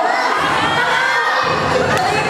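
A crowd of many voices shouting and cheering at once, loud and steady.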